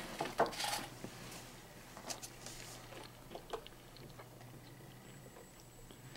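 Faint wet squishing and small clicks from a mouth crammed with gummy bears as another gummy bear is pushed in, in a few short bursts.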